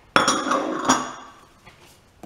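Glass clinking: two sharp knocks about three-quarters of a second apart, each ringing briefly, as small glass dishes are handled against a glass mixing bowl.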